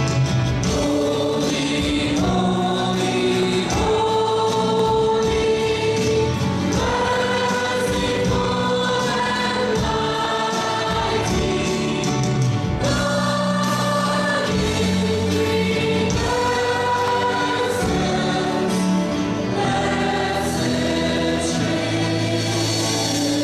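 Gospel worship song sung by a group of voices over a live band with piano and guitars, in long held notes.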